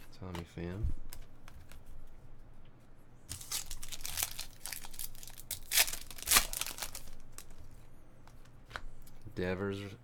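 A foil trading-card pack wrapper being torn open and crinkled in the hands: a dense run of sharp crackling from about three seconds in to about seven seconds, loudest near the middle.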